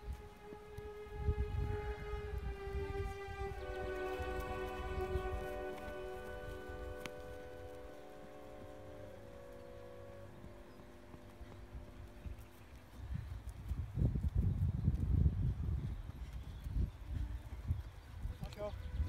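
Held, organ-like tones sounding several notes at once, stepping to new pitches a few times and fading away about thirteen seconds in. Low rumbling comes underneath near the start and again toward the end.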